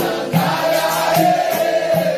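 Capoeira roda music: a group of voices singing a chant-like line, holding one long note through most of the stretch, over percussion keeping a steady beat.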